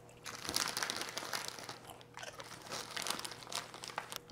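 Small crinkly snack bag being handled and rummaged through, giving quiet, irregular crinkling and crunching rustles.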